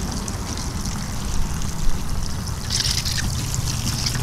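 Water from a garden hose trickling through a bunch of quick-fill water balloons as they fill, with two short knocks near the middle.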